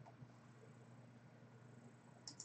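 Near silence with a faint steady low hum.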